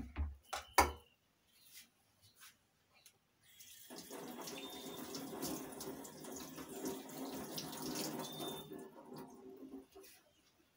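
A few sharp knocks at the start, then a tap running into a sink for about six seconds as hands are rinsed under the stream, stopping just before the end.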